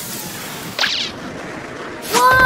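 Cartoon sound effects: a steady rushing swish as the puppy slides down, with one quick high boing just before a second in.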